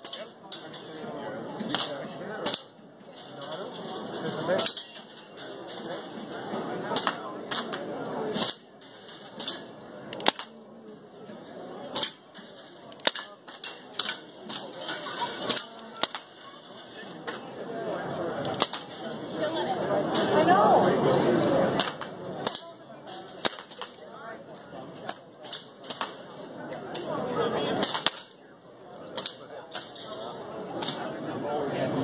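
Gunshots: many sharp reports at irregular intervals throughout, some louder than others.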